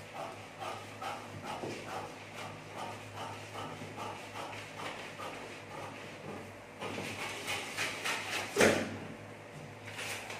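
Tailor's shears cutting through stiff brown kraft pattern paper, a steady run of snips about two a second. Near the end the paper rustles louder as the cut piece is handled.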